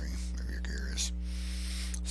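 Steady low electrical hum in the microphone signal, with a soft breath about a second in during a pause between sentences.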